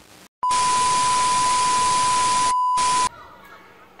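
A loud burst of static-like hiss with a steady high beep running through it, lasting about two and a half seconds. The hiss drops out briefly near the end, then both cut off at once. This is an edited-in transition effect like a TV tuning to static.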